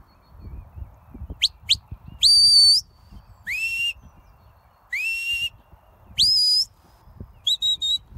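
Handler's shepherd whistle commands to a working sheepdog: two quick rising chirps, then a long held note, two upward-sliding notes and a note that rises and holds, about one a second, ending in a few short quick pips.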